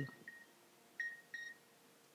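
Two short computer clicks about a second in, a third of a second apart, each with a brief high ring.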